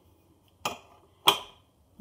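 Two sharp knocks of a small glass dish against a hard surface, the second one louder, about two-thirds of a second apart.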